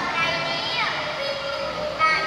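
A young performer's voice delivering Yike (Khmer folk theatre) lines in a sung style, with held notes and a falling slide in pitch about a second in.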